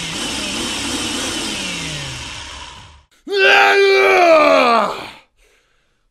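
Power drill whirring for about three seconds over a man's groaning, cutting off abruptly; then a loud, long "woo!" falling in pitch.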